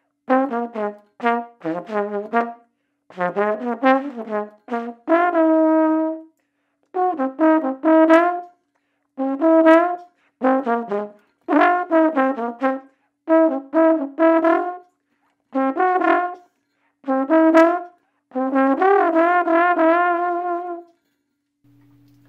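Tenor trombone playing a written solo in short phrases of quick notes separated by brief rests, with a few held notes. The last phrase ends on a long note with vibrato shortly before the end.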